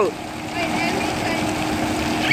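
A steady mechanical hum from the cruise ship's deck machinery, holding one low tone, under an even rush of running water.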